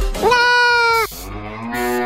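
A person's voice holding two long drawn-out notes, a high one that cuts off abruptly about a second in, then a lower one.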